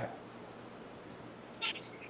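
Faint steady hiss in a gap between speakers on a remote news link, with a brief faint high sound about one and a half seconds in.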